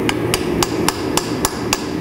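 About seven light, evenly spaced hammer taps on a steel chisel driven into the edge of a copper-and-nickel mokume gane billet held in a vise, roughly three and a half taps a second. The chisel is being used to test whether the forge-welded layers have fused; they split apart, but not easily.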